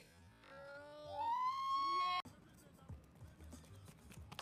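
A person's voice rising in pitch to a high call, held for about a second, then cut off abruptly just after two seconds in. Faint scattered knocks and clicks follow.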